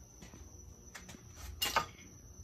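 A short rustle of a printed paper sheet being handled, about one and a half seconds in, over faint room noise.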